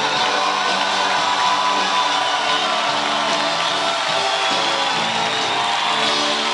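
Live band playing an instrumental passage led by acoustic guitars, loud and steady.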